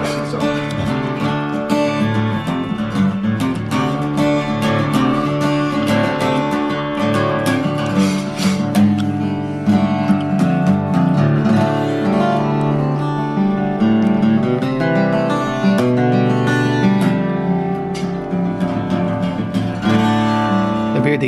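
Martin acoustic guitar with a mahogany-coloured top, played without a break: a flowing run of picked notes and ringing chords.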